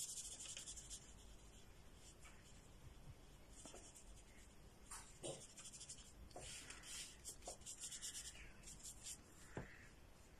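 Faint scratching of a paintbrush stroking gouache across paper, short strokes coming in quick runs, the busiest between about six and nine seconds in.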